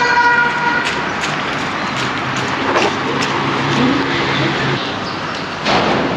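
City street traffic: a car horn held steadily, cutting off about a second and a half in, over constant traffic noise. A lower, wavering engine or vehicle sound follows in the middle of the stretch.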